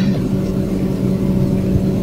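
A car's engine running steadily, a low even hum heard from inside the cabin.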